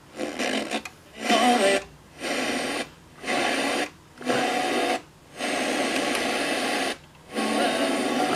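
Sony CFD-S01 boombox's FM radio being tuned up the dial: stretches of static hiss and a brief snatch of broadcast audio, cut by short silences each time the tuner steps to a new frequency.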